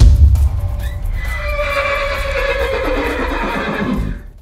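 Dutch house mix with a heavy bass beat. About a second in, a horse whinny comes in over it: one long quavering call that falls in pitch and lasts almost to the end.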